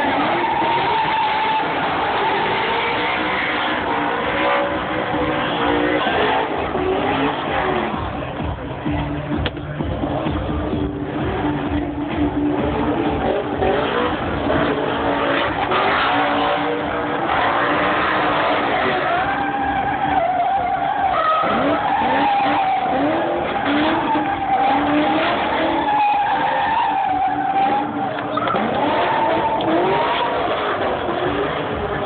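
A drift car's engine revving hard, its pitch rising and falling over and over, with tyres squealing through long continuous slides.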